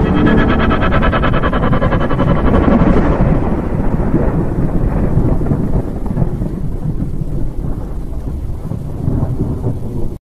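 Thunder sound effect: a loud, deep rolling rumble with a rain-like hiss, crackling through the first few seconds and then fading slowly.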